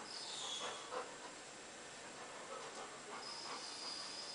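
Golden retriever whining faintly: a short high falling whine near the start and a long, steady high whine near the end, with soft breathing and mouth noises in between.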